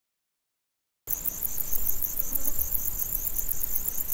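Insects chirping in a fast, even, high-pitched pulse over a low rumble, cutting in abruptly about a second in after silence.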